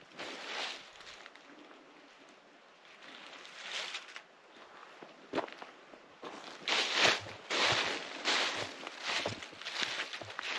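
Footsteps crunching through dry fallen leaves: a few scattered steps at first, then a steady walking pace in the last few seconds.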